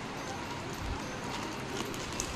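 A clear plastic zip bag rustling and crinkling as a hand rummages inside it, with a few light clicks of pencils and brushes knocking together.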